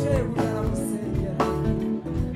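Gospel choir song: a lead singer with a choir singing along over guitar and drum backing, with strong beats about once a second.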